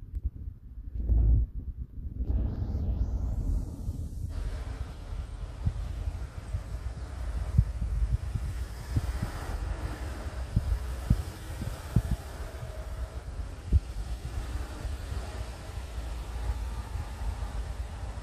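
Low rumble of wind and handling noise on the microphone, with scattered soft knocks and one louder bump about a second in.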